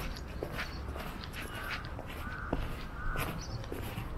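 A crow cawing three times in the middle, over footsteps on paving blocks.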